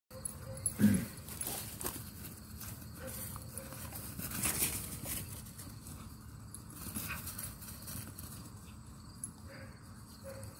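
A pit bull-type dog lets out one short loud vocal sound about a second in, then scuffles and thuds as it chases and lunges at a flirt-pole lure over grass.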